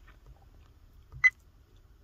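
A single short, high beep from a Nextbase dash cam, its touchscreen key tone as the settings menu is worked, a little past a second in.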